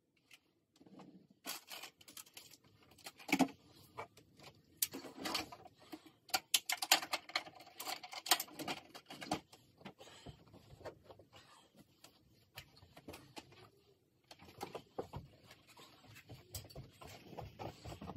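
Bedding rustling as a bed is made, pillows and duvet handled and moved in irregular bursts, with a quieter stretch a little past halfway.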